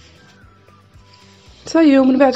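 A quiet stretch with a faint low hum, then a voice starts loudly near the end.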